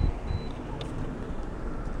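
Steady engine and road noise inside a car's cabin as the car moves slowly along a city street.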